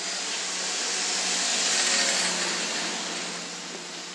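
A rushing hiss with no clear pitch, loudest in the upper range, that swells to its loudest about two seconds in and then eases off.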